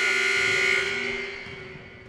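Scoreboard buzzer sounding the end of the game: one steady buzz that cuts off under a second in, then rings on briefly in the gym.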